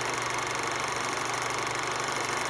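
Steady mechanical whirring with a fast, even flutter, an old film-projector sound effect that starts abruptly with the vintage end title card.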